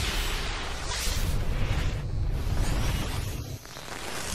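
Cinematic logo-intro sound effects: three whooshing swells over a deep, continuous rumble, dipping briefly near the end.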